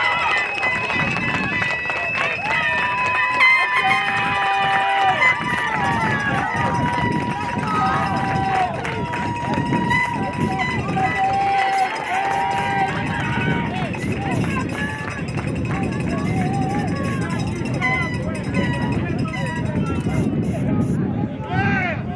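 Distant, unintelligible voices of players and spectators shouting and calling across an outdoor soccer field, many of them long drawn-out calls, over a steady low rumble.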